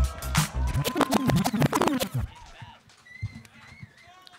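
Hip-hop battle beat played by the DJ, with record scratching, which cuts off suddenly about two seconds in, leaving only a faint background.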